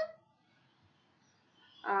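A woman's speaking voice: a word trails off, followed by a pause with only faint room tone. Near the end comes a drawn-out hesitation sound, "uh", held on one steady pitch.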